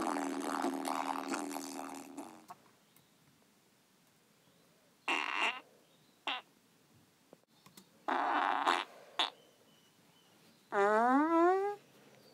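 Background music fades out in the first two seconds. Then come a few short raspy blasts like fart noises, and near the end a longer one of about a second that rises in pitch.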